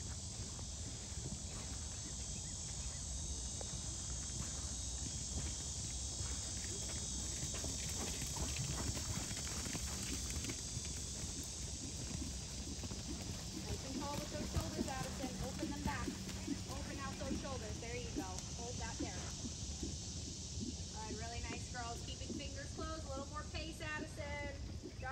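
Hoofbeats of a horse moving over sand arena footing: a continual run of soft, quick thuds.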